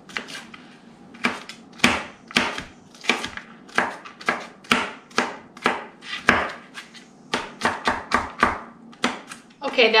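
Chef's knife chopping green bell pepper on a plastic cutting board: steady, sharp knocks about three a second.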